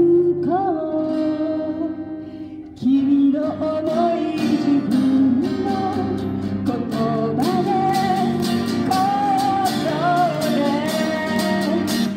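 A woman sings a melody live over strummed guitar chords. The music thins out briefly about two seconds in, then voice and guitar come back in strongly about a second later.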